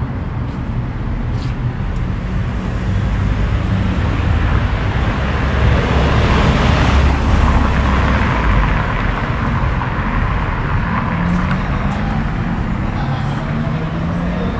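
Street traffic: a steady traffic noise with a low engine rumble, swelling to its loudest about halfway through as a vehicle passes, then a lower engine hum in the later part.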